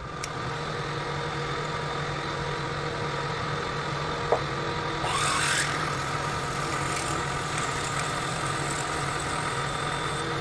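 Benchtop drill press running steadily while drilling a hole in a steel bar. A single click comes just past four seconds in, and a short hiss rises in pitch about a second later.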